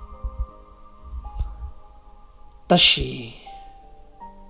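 Soft background music of held keyboard notes, with low thumping pulses in the first half. A spoken word breaks in briefly near the end.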